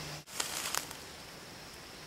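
Quiet woodland ambience: a steady faint hiss, with a few light rustles or crackles about half a second in.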